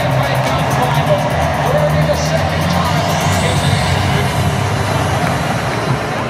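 Music over a stadium public-address system, heard through the noise of a large crowd filling the stands.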